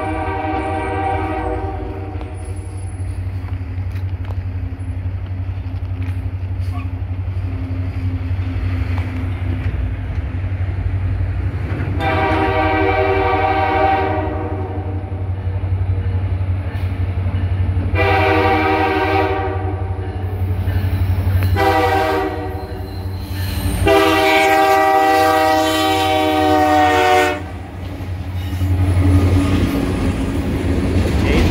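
Multi-note air horn of a CN EMD SD70M-2 diesel freight locomotive sounding for a grade crossing: one blast at the start, then a long, a long, a shorter and a final long blast from about twelve seconds in. Under it runs the steady low rumble of the approaching diesels, growing louder as the locomotives reach and pass the crossing near the end.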